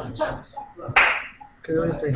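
Brief indistinct speech over a video-call connection, cut by one sharp, loud burst of noise about a second in.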